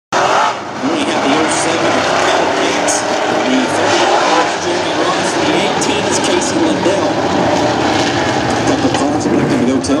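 Engines of several dirt-track modified race cars running at a steady, loud level as the field rolls around the track two by two before the start.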